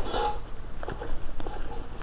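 Rustling of a canvas haversack as small items are pushed into it by hand, with a few light clicks of the items knocking together.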